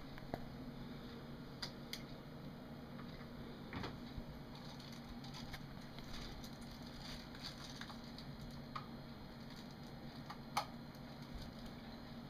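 Scattered small clicks and rustles of a small object being handled, over a faint steady low hum of room tone. The sharpest click comes a little before the end.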